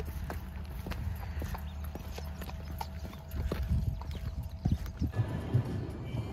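Hard footsteps on wet brick paving at a steady walking pace, about two steps a second, over a low rumble.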